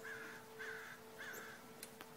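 A bird calling three times, about half a second apart, faintly, over a steady low hum.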